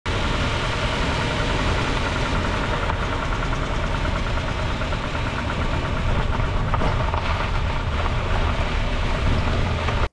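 A car's running noise recorded from underneath, near the front suspension: a loud, steady rumble with a fast rattle running through it. The rattle is typical of a broken sway bar link that has come loose from its top joint and knocks against the parts around it.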